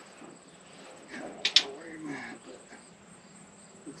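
Two sharp clicks in quick succession about a second and a half in, over a faint, steady, high insect trill; a low voice murmurs briefly after the clicks.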